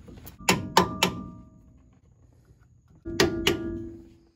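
Metal tool tapping against a disc brake caliper and pads, each tap ringing briefly: four quick taps in the first second, then two more about three seconds in, the last ringing on.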